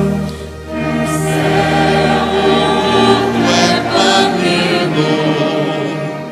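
Choir singing a hymn with a full orchestra of strings and brass accompanying. The music dips briefly about half a second in, between phrases, then comes back up.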